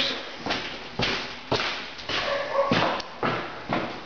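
Footsteps on bare wooden floor and stairs, about two steps a second, as a person walks through to climb a wooden staircase.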